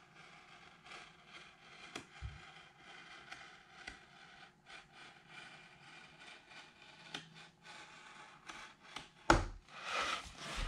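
A pen scratching along a rocket body tube as lines are drawn on it, with light handling knocks. A sharp, louder knock comes about nine seconds in, followed by louder rustling of the tube being handled.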